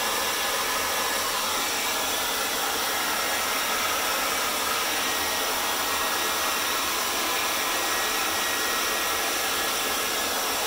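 Handheld hair dryer running steadily, blowing air across wet acrylic pour paint on a canvas to spread it.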